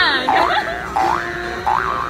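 Cartoon-style 'boing' sound effect: pitched tones that slide up and down in smooth sweeps, repeated about four times in quick succession.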